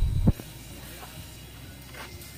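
A few dull low thumps of the camera being handled and set down, then a quiet steady background.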